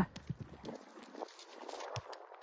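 Faint, irregular hoofbeats of a Connemara pony cantering on grass turf.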